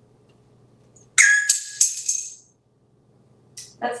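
A sudden jingling rattle about a second in: three quick sharp strikes with a high ringing that dies away within about a second and a half.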